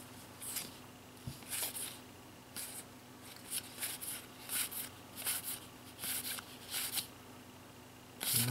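Dragon Ball GT trading cards sliding against one another as they are flicked through by hand, one card at a time. About a dozen short, soft swishes come roughly twice a second, then stop near the end.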